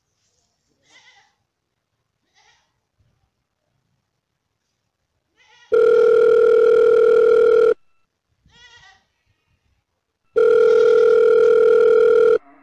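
Telephone ringing tone as heard by a caller: two long, steady buzzing tones of about two seconds each, the first a little past the middle and the second near the end, with a silent gap of under three seconds between them.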